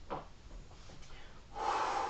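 A man taking a deep breath, a loud rush of air starting about one and a half seconds in, as he catches his breath after dancing.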